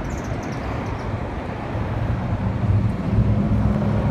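A motor vehicle's engine running steadily as a low hum, growing louder about halfway through, with wind rumbling on the microphone.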